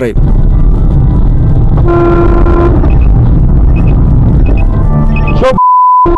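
Dashcam recording inside a moving car: a loud, steady low rumble of engine and road noise, with a car horn sounding for just under a second about two seconds in. Near the end a man's voice starts and is cut off by a steady high beep.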